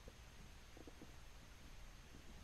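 Near silence: faint room tone with a steady hiss and a low hum, and a few faint brief sounds about a second in.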